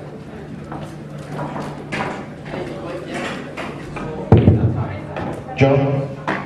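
A single loud thump with a short low boom about four seconds in, over low voices in a hall.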